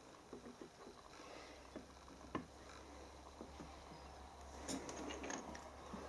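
Faint small clicks, taps and rustles of hands handling a toy steam roller and a plastic oil bottle, with one sharper tick about two seconds in and a short cluster of handling noise near the end. A low steady hum runs underneath.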